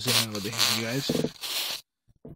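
A man's voice drawing out a hesitant syllable, under a loud hiss that cuts off just before the end.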